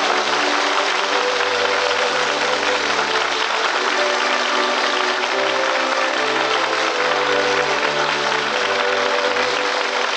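A studio audience applauds, a steady wash of clapping over music playing held chords underneath.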